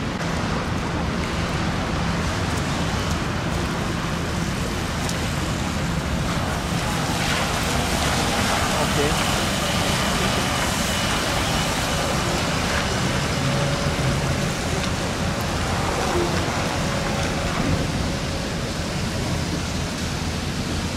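Rainy-night traffic on wet road, a steady rumble and tyre hiss. An articulated trolleybus passes close in the middle, its tyres hissing louder on the wet tarmac, with a faint high whine.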